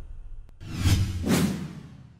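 Whoosh sound effects of an animated title transition: a brief click, then two swelling whooshes about half a second apart that fade away.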